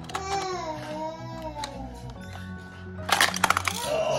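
Background music plays with a steady low line. About three seconds in comes a quick cluster of sharp plastic clicks and clacks as a Hot Wheels toy car is pushed and handled on the plastic track set.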